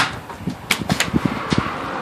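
A few light, sharp clicks and knocks from plastic water bottles being handled and tossed, over a faint steady background hum.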